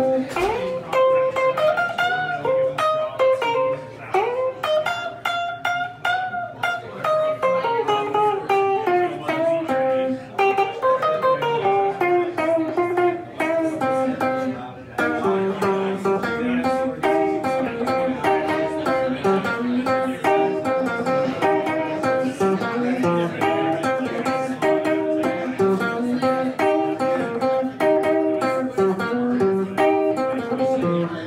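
Solo blues instrumental on a red semi-hollow-body electric guitar. It opens with single-note lead lines and string bends, and from about halfway it settles into a repeating rhythmic riff.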